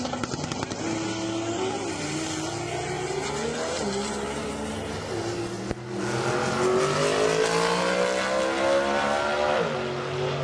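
Drag race car engines running at full throttle down the strip, their pitch climbing and dropping back briefly a couple of times. After a short break about halfway, a louder stretch climbs steadily higher before falling away near the end.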